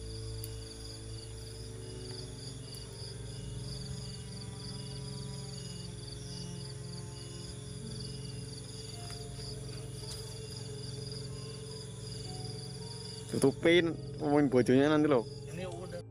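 Crickets chirping steadily under a low, held drone of background music. Near the end a voice speaks loudly for a couple of seconds.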